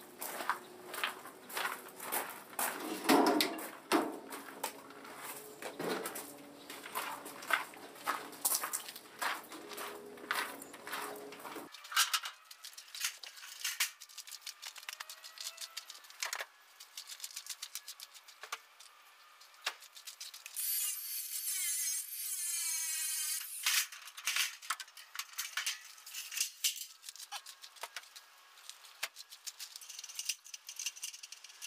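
Scattered metallic clinks, knocks and rattles of scrap metal being handled and unloaded, with a drawn-out falling squeal about two-thirds of the way in.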